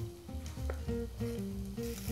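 Chopped onion and celery sizzling in hot oil in a pan, the sizzle growing louder near the end, with a knife tapping on a cutting board as cherry tomatoes are sliced. Light background music plays underneath.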